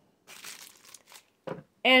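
Thin plastic bag wrapped over a glass jar crinkling as the jar is handled, lasting about a second.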